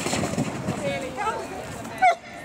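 A person's voice calling out over a steady outdoor background hubbub, with a drawn-out, gliding call in the middle.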